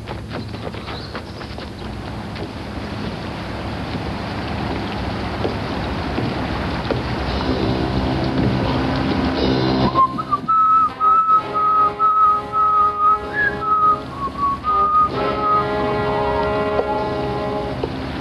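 A rushing noise that slowly grows louder for about ten seconds, then a whistled tune of long held notes over backing music.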